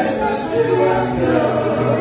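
Live Congolese rumba band rehearsing: electric guitars and a bass line playing under several voices singing together through microphones.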